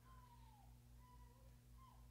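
Near silence: a faint steady low hum with faint, thin whistling tones that dip in pitch at their ends.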